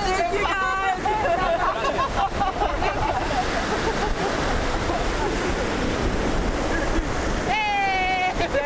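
Steady surf and wind on the microphone, with people's voices calling out in the first second or so and a long, high voice call near the end.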